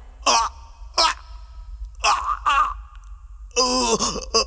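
A man crying out in pain in several short wails, each falling in pitch, with a longer cry about two seconds in and another near the end.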